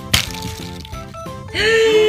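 A single sharp click as the plastic cheese-wedge spinner of a Mouse Trap board game is flicked, over steady background music. An excited voice starts shouting near the end.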